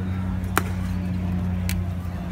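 A pitched baseball smacking into the catcher's mitt once, sharply, about half a second in. A fainter click follows near the end, over a steady low hum.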